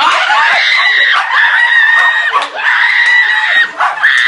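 Long high-pitched screaming at a steady pitch, three screams of about a second each with short breaks between, and a fourth beginning at the end.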